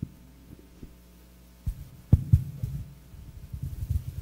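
Microphone handling noise over a faint steady hum: a few light clicks, then from a little before halfway a run of low thumps and rumbles as the microphone is picked up and handled, the loudest knock just past halfway.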